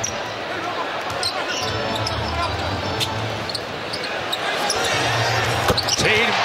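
Steady murmur of a large arena crowd during live play, with a basketball being dribbled on a hardwood court as a few separate sharp knocks, the clearest about three seconds in and near the end.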